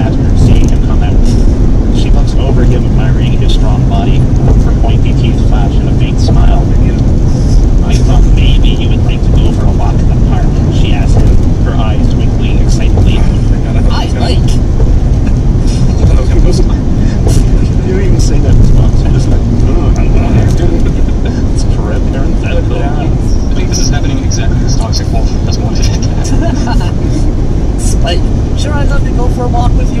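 Steady, loud low rumble of a car's road and engine noise heard inside the cabin at highway speed.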